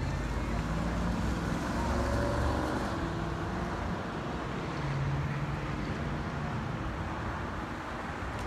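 Road traffic: cars driving past on a busy multi-lane street, engine and tyre noise rising and falling, loudest about two seconds in and again near five seconds.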